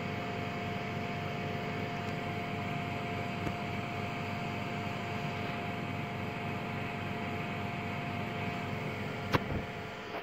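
Steady machine hum of running equipment, with two faint steady whining tones over it. A single sharp click comes near the end.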